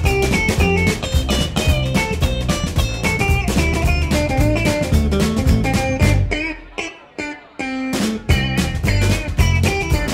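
Blues band playing an instrumental passage between verses: electric guitar over drum kit and upright bass. About two-thirds of the way through, the band stops for about a second while a few notes ring on, then comes back in.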